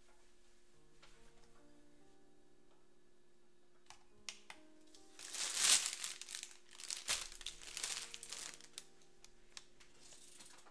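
Plastic bag of rolled oats crinkling as it is handled, loudest from about five to nine seconds in. Faint background music with held notes plays underneath.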